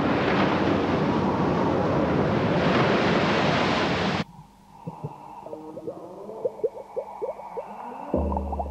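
Loud, steady rush of surging water like surf that cuts off suddenly about four seconds in. Then comes a quieter stretch of short rising chirps, several a second, over a faint steady tone.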